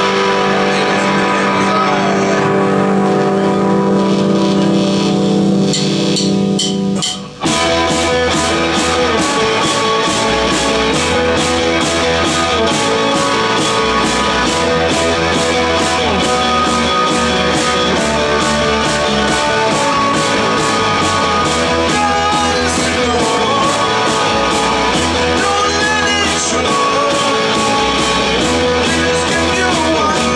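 Live rock band playing through the PA. A sustained chord rings for about seven seconds. Then the full band comes in, with drums keeping a fast, steady beat under bass and guitar.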